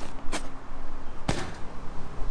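A rolled-up sleeping bag tumbling down an asphalt-shingle roof and dropping off the edge, heard as two short thuds about a second apart.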